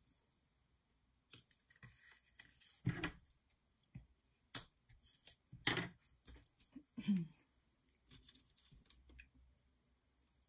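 Handling of paper and cardstock: backing liners are peeled off foam adhesive strips and the card layer is shifted on the desk, making a scatter of short scrapes, crinkles and clicks. A throat is cleared about halfway through.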